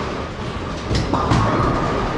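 Bowling alley din: bowling balls rumbling along wooden lanes over a constant low roar, with sharp clacks of pins being struck about a second in and again just after.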